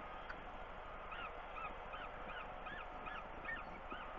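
Peregrine falcon calling: a run of short, arched notes that rise and fall, about two to three a second, starting about a second in, over a steady background hiss.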